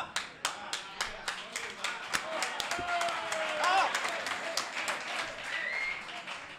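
Audience clapping: many quick hand claps through the whole stretch, with a few voices calling out among them.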